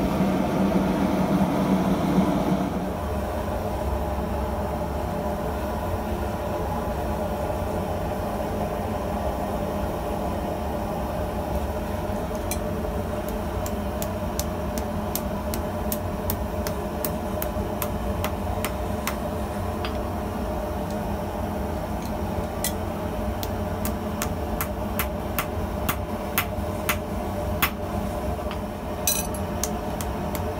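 Gas forge running with its blower for the first few seconds, then a steady low hum of the blower underneath while a hammer strikes a forge-welding-hot stainless steel pipe packed with tool steel bits on a steel anvil block. The blows start about twelve seconds in, spaced at first, and come faster toward the end.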